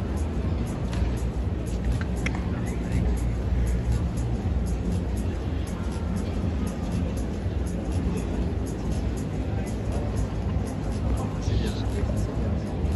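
Background music with a song's vocals and a steady, heavy bass line.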